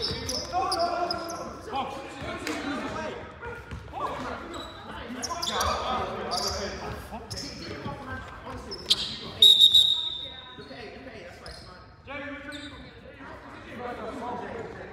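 Basketball game in a large sports hall: a ball bouncing on the wooden court and players' voices calling out, echoing around the hall. A short, high, steady tone about nine and a half seconds in is the loudest moment.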